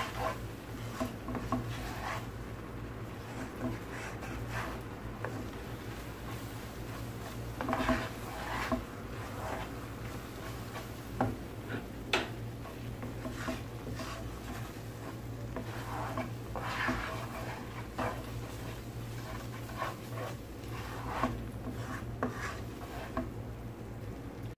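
Wooden spatula stirring and scraping thick milk reduced to khoya in a metal pan, in irregular strokes against the pan's bottom and sides, kept going so the mass does not stick to the bottom. A steady low hum runs underneath.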